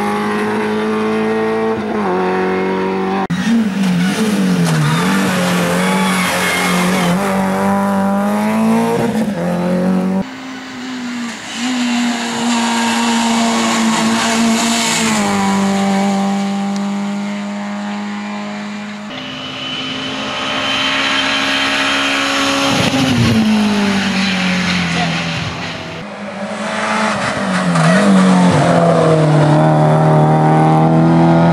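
Renault Clio rally cars' four-cylinder engines revving hard on a hillclimb, the pitch climbing and dropping repeatedly with gear changes and lifting for bends, over several separate passes.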